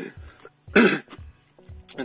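A man gives one short cough, clearing his throat, about a second in.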